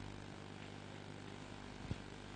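Faint steady low hum with a light hiss, broken by one short soft thump near the end.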